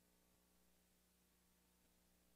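Near silence: faint steady room tone, a low hum and hiss.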